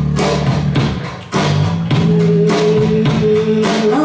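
Rock band playing live on a club PA: electric guitar, bass guitar and drums, with no singing. The sound drops briefly a little over a second in, then the full band comes back in.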